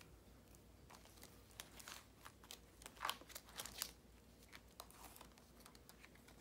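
Faint crinkling and rustling of clear plastic zipper pouches as the pages of a cash-envelope binder are turned and handled, a string of small crackles that is busiest around the middle.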